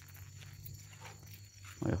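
Night insects, likely crickets, chirping steadily in high thin trills over a low steady hum.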